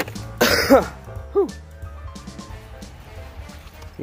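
A man coughing and clearing his throat, a harsh burst about half a second in and a shorter one around a second and a half, after breathing in diatomaceous earth dust. Background music with steady held tones runs underneath.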